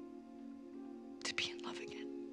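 Soft background score of held, sustained notes, with a brief breathy sound from a tearful woman about a second and a half in.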